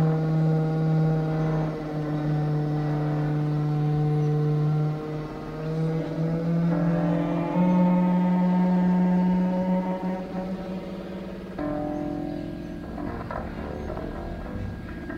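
Live electronic music: low, held drone-like tones with overtones, stepping to new pitches every few seconds. The sound thins out and gets quieter after about ten seconds.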